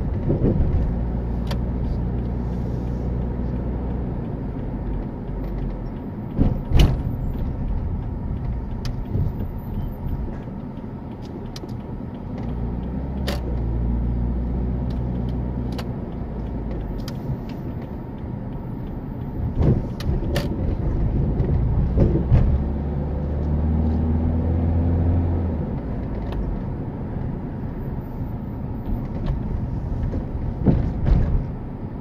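Car engine and tyre noise heard from inside the cabin while driving slowly. The engine note swells and shifts in pitch twice as the car picks up speed, and there are a few sharp knocks along the way.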